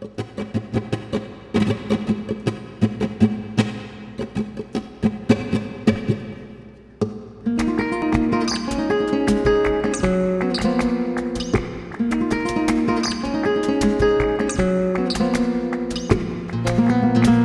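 Flamenco guitar playing a soleá por bulerías. It opens with quick, sharp plucked strokes, breaks briefly about seven seconds in, then goes on with fuller ringing chords and melody over low bass notes.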